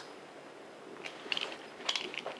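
Faint handling noise as a hand lifts a small plastic toy helicopter off a tabletop: a few light clicks and taps in the second half.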